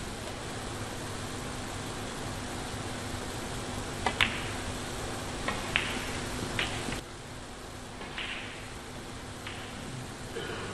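Sharp clicks of snooker balls, cue tip on cue ball and ball striking ball, several of them in quick pairs from about the middle on, over a steady hiss of the hall.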